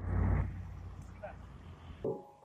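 Outdoor street ambience: a low rumble that is loudest in the first half-second and then settles, with faint voices in the background.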